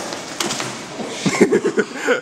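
Music cuts off at the start, then about a second in a person starts laughing, a quick run of short ha-ha sounds.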